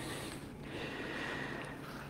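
A man's faint breathing through the nose over quiet room tone.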